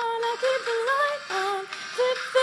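A pop song: a voice singing a melody in a run of held notes, each about half a second, over a backing track.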